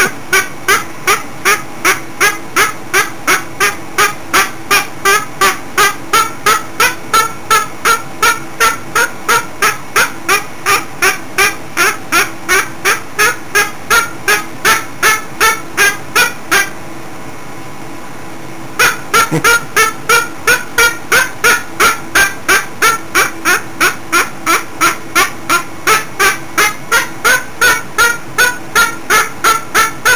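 Cockatoo calling in a steady rhythm, about two and a half short, harsh calls a second, like a beat; the calls stop for about two seconds past the middle and then pick up again at the same pace.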